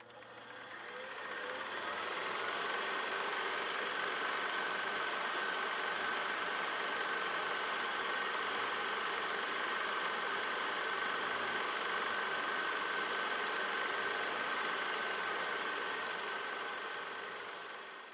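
A machine running steadily, with a constant high whine over a noisy mechanical clatter; it fades in over the first two seconds and fades out near the end.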